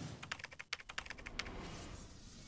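Computer-keyboard typing sound effect: a quick run of about a dozen key clicks lasting about a second.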